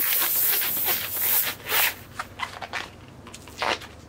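Air hissing out of the nozzle of an inflated 260 latex twisting balloon as most of its air is let out, the hiss fading away about halfway through. After it come scattered short squeaks and crackles of the latex being squeezed and handled.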